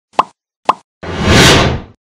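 Logo-intro sound effect: two short pops about half a second apart, then a whoosh lasting about a second that fades away.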